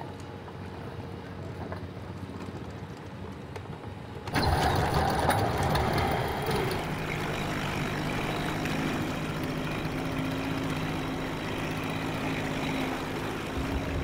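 Engine of a small canopied wooden passenger boat running steadily under way on a river, a low steady drone that comes in abruptly about four seconds in after quieter waterside background.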